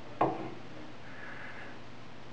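A single sharp knock of a hand tool against wood, about a quarter of a second in, followed by a faint brief hiss.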